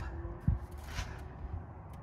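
Faint rustling with a single soft knock about half a second in.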